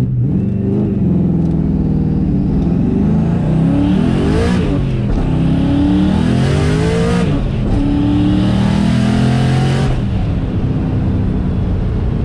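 Twin-turbo V8 of a Saleen Mustang with a manual gearbox accelerating hard, heard from inside the cabin. The engine note climbs in pitch and drops back at each upshift, several times over.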